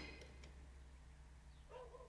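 Near silence with a low steady hum; near the end, a faint, brief wavering whimper.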